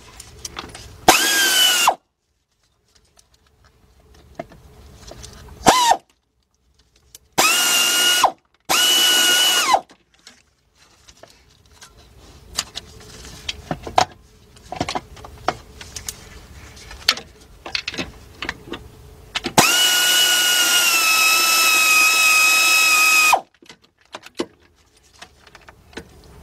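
Cordless power tool with a deep socket spinning in bursts on the starter's top mounting bolt: a short spin about a second in, two spins of about a second each, then a longer spin of about four seconds near the end whose pitch sags a little under load. Metallic clicks and knocks of the socket and tool being handled come between the bursts.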